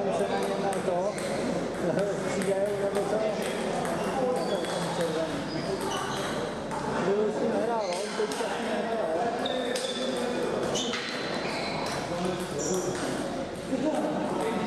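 Table tennis balls clicking off bats and tables, many short high pings at irregular intervals, over voices chatting in the background.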